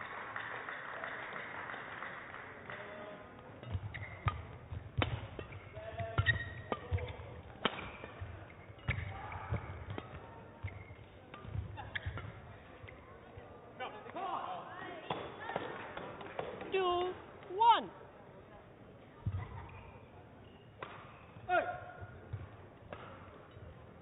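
Badminton rally: sharp racket hits on the shuttlecock from about four seconds in, with shoes squeaking on the court floor towards the end of the rally, which stops a little after the loudest squeal.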